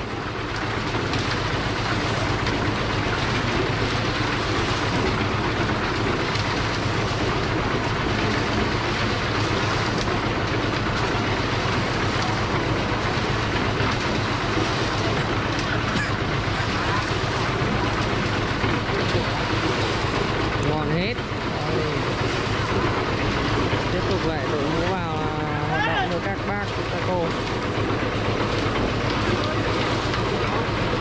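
Tilting-drum concrete mixer running steadily, its motor and turning drum making a continuous loud churning drone. Voices call out briefly near the end.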